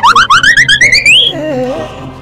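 A comic sound effect: a rapidly warbling tone that rises steadily in pitch for about a second and breaks off, followed by a short, lower wavering tone.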